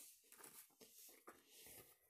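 Near silence, with faint soft rustles and small ticks of a piece of crocheted cotton lace being handled by hand.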